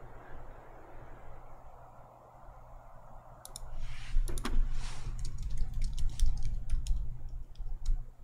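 Computer keyboard and mouse clicking: a run of quick, irregular clicks starting about three and a half seconds in, over a low steady hum.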